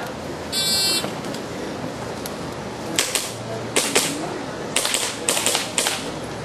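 An electronic shot timer beeps once, briefly, about half a second in. From about three seconds in, an airsoft pistol fires a string of sharp clacks, several in quick pairs and groups.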